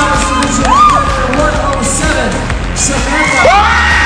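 Music playing with a crowd cheering and whooping, with rising-and-falling whoops about a second in and again near the end.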